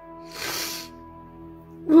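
Soft background music of long held notes, with one short, breathy intake of breath from a weeping woman about half a second in. Her voice resumes just at the end.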